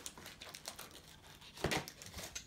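Faint crinkling and rustling of a plastic trading-card sleeve being handled, with one sharper crackle near the end.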